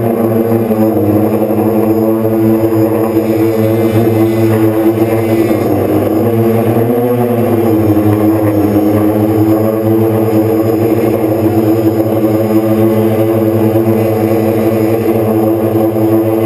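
Quadcopter's electric motors and propellers humming steadily, heard from the drone's own onboard camera; the pitch wavers down and back up about six to seven seconds in as the motors change speed.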